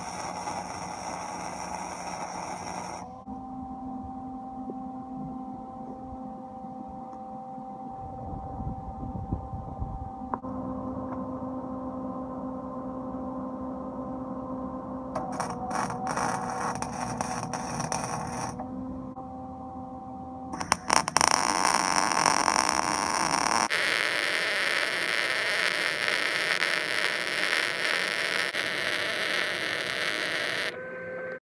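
MIG welding on steel: the arc runs in a loud, even sizzling crackle for a few seconds at the start and again through the last third. Between welds there is a steady electrical hum with a few short bursts of crackle.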